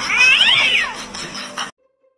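A cat meowing: one drawn-out call that rises and then falls in pitch, lasting about a second. The sound cuts off abruptly near the end.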